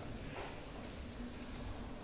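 Faint room tone with a low steady hum during a brief pause in speech.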